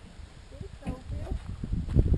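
A Holstein calf grazing and moving about close by: irregular low knocks and rustles as it crops grass.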